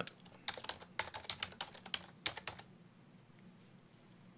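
Typing a short phrase on a computer keyboard: a quick run of keystrokes starting about half a second in and stopping about two and a half seconds in.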